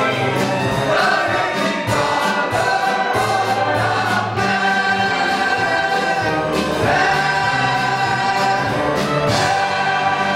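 A stage cast singing a musical-theatre ensemble number in chorus with instrumental accompaniment, the voices holding long sustained chords through the second half.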